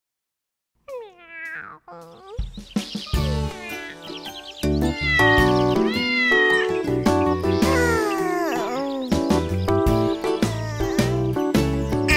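A cartoon cat meowing several times. The first meows come alone after about a second of silence. Then children's-song music with a steady beat comes in about two and a half seconds in, and more meows sound over it.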